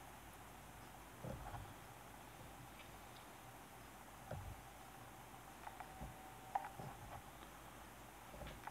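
Very quiet room tone with a handful of faint soft knocks and handling noises from hands and a bodkin working at a fly-tying vise.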